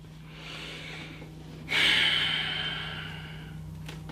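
A man breathes in softly, then lets out a long sigh that fades away over about two seconds.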